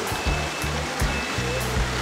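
Background music with a steady low bass line, over an even rushing noise like running water.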